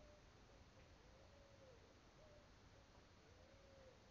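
Near silence, with a faint animal call repeating about every two seconds: a long note that rises and falls, followed by a short flat note.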